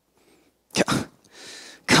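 A man's short, forceful burst of breath into a handheld microphone, in two quick pulses about three-quarters of a second in, followed by a softer breath.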